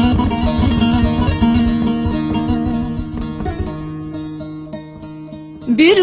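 Instrumental interlude of a Turkish folk song: plucked strings playing a quick melody over steady held low notes. Near the end a singer's voice slides upward into the next sung line.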